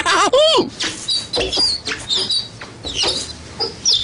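Animal calls: a loud wavering call near the start, followed by short high chirps and clicks.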